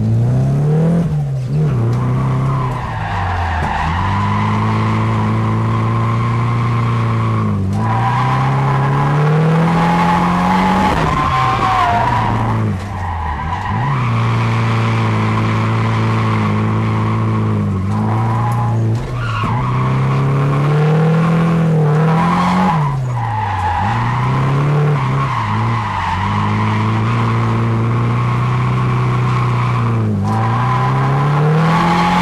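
Drift car's engine heard from inside the cabin, held at a steady pitch for several seconds at a time, then dropping and climbing again every few seconds through the slides, with tyres squealing.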